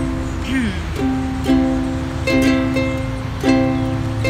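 Ukulele strummed in a few chords, each left ringing: the opening bars of a song before the singing comes in.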